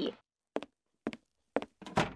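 A few light footsteps, about two a second.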